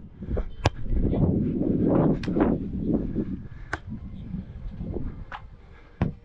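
Four sharp smacks of hands striking a beach volleyball during a serve and rally, about a second and a half apart. Low wind rumble on the muffled, wind-shielded microphone, strongest in the first half.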